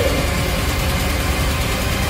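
A steady low rumble with a hiss over it and no clear pitch or rhythm, holding at an even level.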